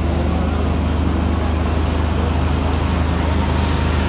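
A steady low rumble under a continuous noisy background hum, with no sudden events.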